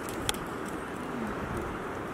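Steady outdoor background noise with one sharp click about a quarter of a second in.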